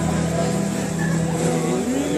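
Worship band holding a low, steady chord through the hall's PA, with a short laugh at the start.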